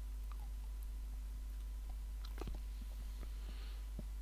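Quiet background with a steady low hum and a few faint small clicks a little past the middle.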